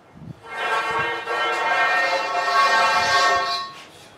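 Long galvanized steel pipe scraping on the concrete floor as it is lifted and swung upright, the tube ringing with a sustained tone rich in overtones for about three seconds. A couple of low knocks come just before it starts.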